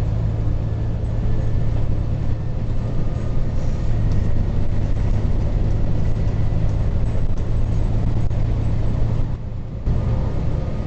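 A bus heard from inside the cabin while it drives along: a steady low engine drone under road noise. The sound drops off briefly near the end, then comes back.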